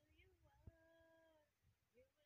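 Near silence, with a faint pitched call in the middle that is held steady for about a second, and a soft click as it begins to hold.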